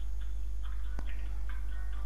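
Faint, regular ticking, about two ticks a second, with one sharper click about a second in, over a steady low hum.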